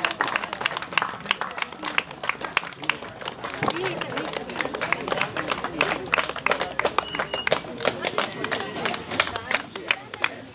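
A crowd clapping in scattered, irregular claps, with people talking underneath.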